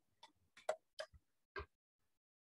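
About four sharp, unevenly spaced clicks of a computer mouse.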